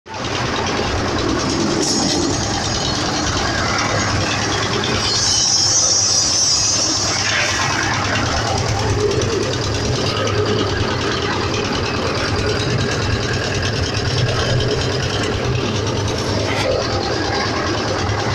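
An engine running steadily with a constant low hum under general construction-site noise, with a brief hissing rush about five seconds in.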